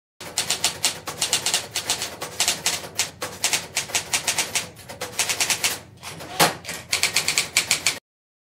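Manual typewriter keys clacking in quick runs, with a short pause and one heavier clack about six and a half seconds in before the typing resumes.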